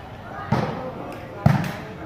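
A volleyball struck by hand twice, about a second apart, with two sharp smacks, the second louder.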